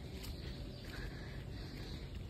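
Quiet tropical forest ambience: a faint steady hiss with a low rumble from the handheld phone's microphone as it is carried along the trail.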